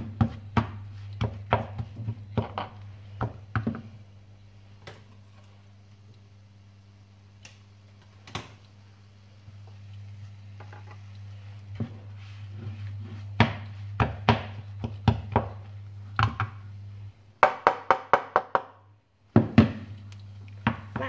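Wooden spatula stirring, pressing and scraping thick mung bean filling in a nonstick frying pan: repeated short taps and scrapes against the pan, coming in runs with a quieter stretch in the middle, over a steady low hum.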